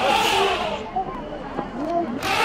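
People's voices talking and calling out, with a short rushing noise in the first half-second.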